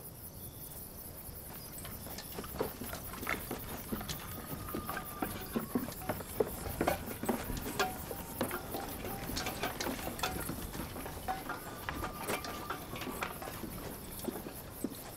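Irregular footsteps on dry ground with small knocks and clinks of soldiers' armour and carried kit, as men walk away across the yard.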